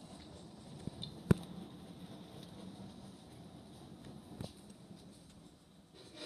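Quiet room tone while a Lego toy car is nudged slowly by hand across paper on a table, with one sharp click about a second in and a fainter tick a few seconds later.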